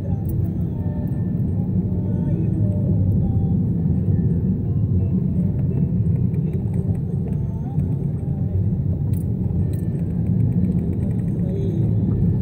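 Car cabin road noise while driving: a steady low rumble of engine and tyres on the road, heard from inside the car.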